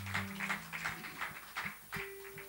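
Faint, irregular clicks and knocks, a few each second, over room tone. A low held note sounds briefly at the start, and a higher held note comes in at the very end.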